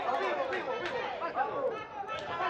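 Crowd chatter: many voices talking over one another, with no single voice standing out.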